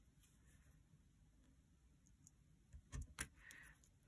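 Mostly near silence, then a few faint sharp clicks and a brief rustle about three seconds in, from hands pressing a pin into place and smoothing paper strips flat.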